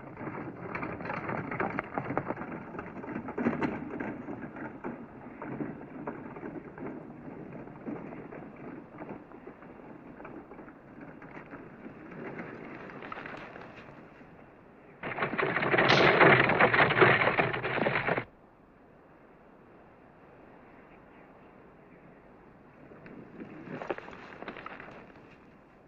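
Dry tall grass rustling and crackling as many people push through it. It fades after about ten seconds, and a much louder burst of noise starts suddenly about fifteen seconds in and cuts off sharply some three seconds later.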